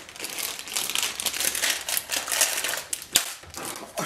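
Crinkling of the white bag of shortbread cookie mix as it is pulled and twisted in an attempt to tear it open, a continuous crackle with one sharp click a little after three seconds in.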